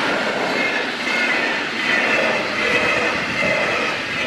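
A train passing at speed through a level crossing: a steady rush of wheels on rail, with a thin high whine over it.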